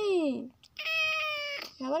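Black-and-white domestic cat meowing: an arching meow that rises and falls, then a higher, flatter, longer meow about a second in, and another arching meow starting near the end.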